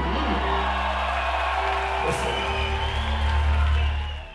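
Live band music played loud through a concert PA: a long held low bass note under sustained chord tones, with some crowd noise.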